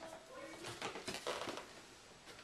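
Soft handling noise: a cardboard shoebox being picked up and moved, with faint rustles and a few light knocks.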